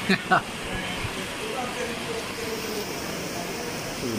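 Two brief vocal sounds from a person right at the start, over a steady background hum and hiss.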